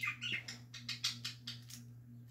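Plastic K'NEX claw model clicking and rattling as it is handled and worked: a quick run of light, irregular clicks.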